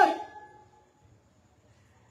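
A man's voice breaking off, its sound dying away within about half a second, then near silence with a faint low hum.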